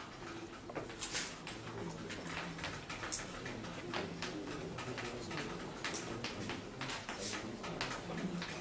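Chalk writing on a blackboard: a run of irregular short, sharp taps and scratches as the chalk strikes and drags across the board, over a faint low murmur.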